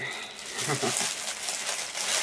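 Clear plastic packaging of bead necklaces rustling and crinkling as it is handled, with a brief murmured syllable about half a second in.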